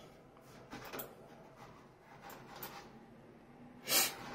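Handling noise from moving computer cables and equipment: a few faint knocks and rubs, then one sharp, louder knock near the end.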